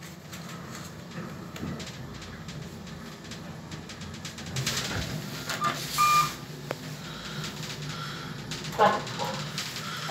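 Kone EcoDisc lift car travelling: a steady low hum of ride noise inside the car, with a short high electronic beep about six seconds in.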